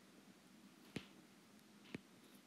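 Two sharp taps about a second apart, a stylus tapping on a tablet's glass screen, over near silence.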